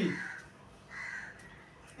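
A bird calling twice, faintly in the background: two short calls about a second apart.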